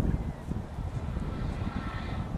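Wind buffeting the microphone in irregular gusts, with a faint mechanical hum coming up near the end.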